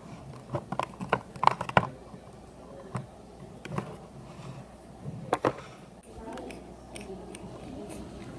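Plastic toy handling: a quick run of light clicks and taps as figures and the clear plastic windshield are moved around in a toy limousine, with a few more taps later. About six seconds in, a low steady rumble begins, as the plastic limo's wheels roll across the wooden tabletop.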